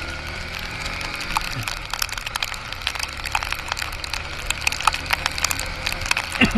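Motorcycle riding through heavy rain on a flooded road: a steady low engine hum under a hiss of water, with many quick, irregular ticks and crackles of water drops striking the camera.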